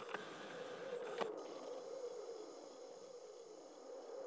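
The quiet opening of a dub techno track: faint hiss with a soft wavering hum and a few scattered clicks, dying away toward the end.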